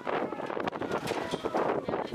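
Wind buffeting the microphone over a background of overlapping spectator voices and shouts at an outdoor youth football game.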